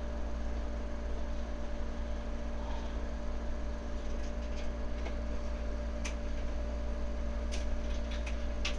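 Steady low electrical hum with a few faint fingertip taps on the iPad screen about halfway through and near the end.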